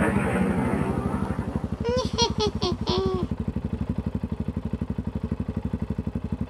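Small motorcycle engine idling with a rapid, even beat as the bike rolls to a stop and sits still. A brief burst of voice comes about two seconds in.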